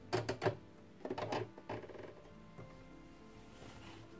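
A domestic electric sewing machine stitching in two short runs within the first two seconds, its needle clattering, over soft background music.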